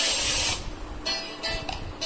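Music from a patriotic song, with short held notes and hissy passages.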